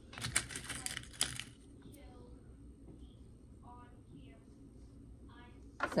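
A short burst of light clicks and rustling from pins being picked up and knit fabric being handled while pinning a waistband, followed by quieter handling of the fabric.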